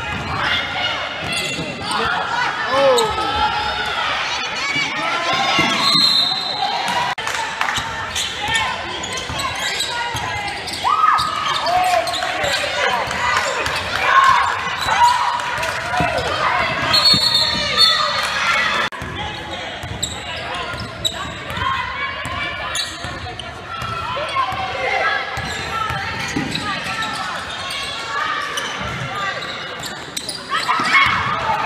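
Basketball game sounds in a large echoing gym: players' and onlookers' voices calling out, with a basketball bouncing on the hardwood court. Two brief high-pitched squeaks cut through, about six seconds in and again near seventeen seconds.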